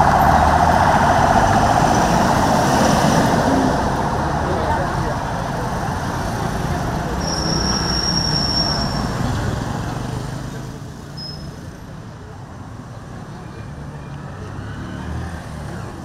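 Street traffic: a van drives past close by, its engine and tyres loud at first and fading away after about ten seconds, with voices in the background. A brief high, thin steady tone sounds about halfway through.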